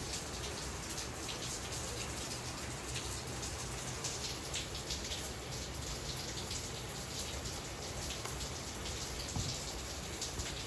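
Steady rain falling, with faint, irregular drop ticks.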